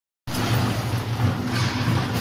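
Automatic rubber band packing machine line running, its bucket elevator conveying rubber bands: a steady machine hum that starts abruptly just after the beginning.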